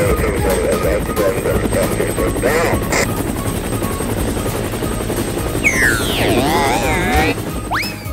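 Cartoon helicopter sound effect, a steady chopping rotor with engine whine, over background music. About six seconds in, a run of wavy, warbling pitch glides rises over it.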